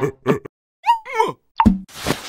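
Cartoon sound effects: a few short plopping sounds with silent gaps between them, and a brief squeaky note that bends in pitch about a second in.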